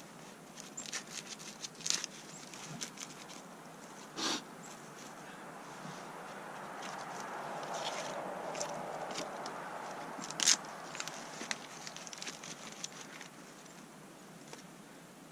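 Dry split kindling, wood shavings and bark being handled and laid into a stone fire pit: scattered light clicks and small snaps of wood on wood, a duller knock about four seconds in and a sharper click about ten and a half seconds in, over a rustle that swells in the middle.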